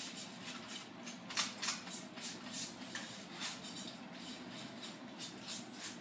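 Foam paint brush dabbing and wiping white paint onto a metal pizza pan: soft, scratchy strokes, about two or three a second, at an uneven pace.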